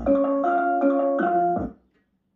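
Music played through a Philips SPA4040B 5.1 home theater speaker system: a melody of short stepped notes over deep bass hits, with a bass hit just before the music stops suddenly near the end.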